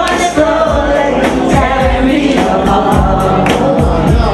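A woman singing into a handheld microphone over loud backing music with a steady beat, with other voices singing along.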